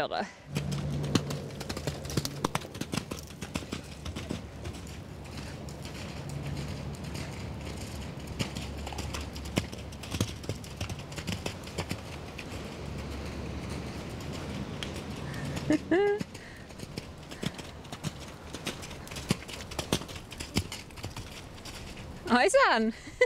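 Horse cantering on a wet, muddy arena, its hoofbeats coming as a run of dull, irregular knocks. A brief voice call comes about sixteen seconds in.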